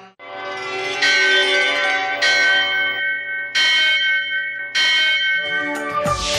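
A temple bell struck about five times at roughly one-second intervals, each stroke ringing on and fading before the next. Music begins underneath near the end.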